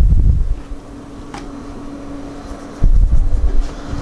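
Two low rumbles of handling noise on the microphone, one at the start and one about three seconds in, over a steady low hum.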